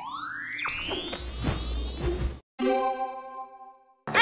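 Cartoon scene-transition sound effect: a whistle-like tone glides steadily upward in pitch for about two and a half seconds, then after a brief gap a held chime chord rings and fades away.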